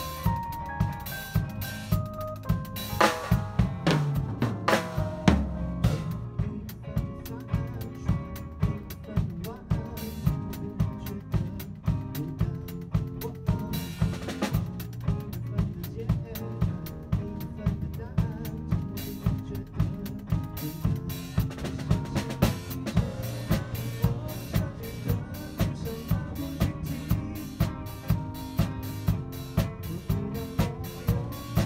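Drum kit played with sticks in a steady groove: snare, bass drum and rimshot strokes, over accompanying music with pitched instruments.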